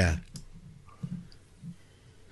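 A man's voice trailing off, then a quiet pause with a single faint click and faint low murmurs.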